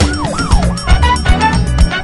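A siren sound in the song's mix, its pitch swooping up and down quickly about five times and dying away about a second in. It sits over the band's music with a steady drum and bass beat, which carries on alone after the siren stops.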